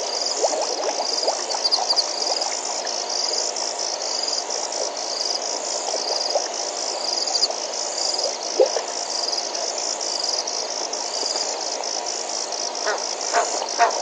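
Night chorus of frogs and insects at a waterhole: a steady, evenly pulsing high insect trill over a continuous chatter of frog calls, with one louder call a little past halfway.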